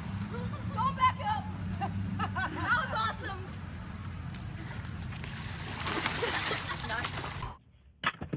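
Outdoor water-slide ambience: a steady rush of running water with a low hum, and distant voices calling now and then. It cuts off suddenly near the end.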